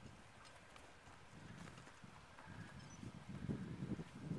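Footsteps crunching in packed snow, faint at first and growing louder and more regular from about three seconds in.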